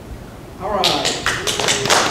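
A room full of people starts clapping about two-thirds of a second in, with voices mixed in, and the applause keeps going.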